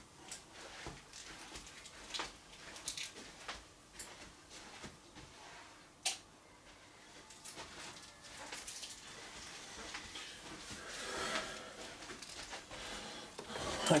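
Faint, scattered small clicks and knocks of handling, with one sharp click about six seconds in, fitting a light switch being flipped.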